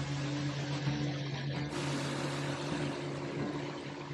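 Pontoon boat under way: the outboard motor runs with a steady low drone beneath a rush of wind and water noise.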